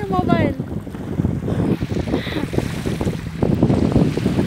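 Wind buffeting a phone's microphone: a loud, irregular low rumble that comes and goes in gusts, with a brief voice right at the start.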